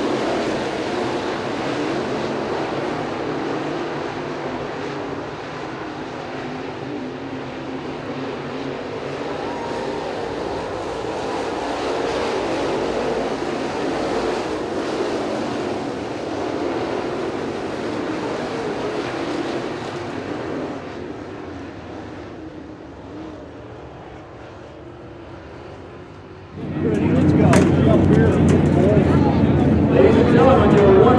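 A pack of dirt late model race cars with crate V8 engines running at racing speed around the oval. The engine noise swells and eases as the cars pass and grows fainter past the middle. About 27 s in, it cuts abruptly to a louder, closer sound with voices.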